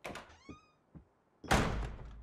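Footsteps on wooden stairs and a short creak that falls in pitch, then a loud door slam with a low boom about one and a half seconds in.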